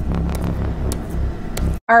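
A low rumbling drone from a horror film clip's soundtrack, with a few faint clicks, cutting off suddenly near the end.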